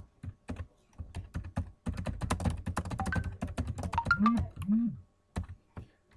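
Typing on a computer keyboard: a quick run of key clicks, starting about a second in and thickest from about two to five seconds, as a short phrase is typed into a document.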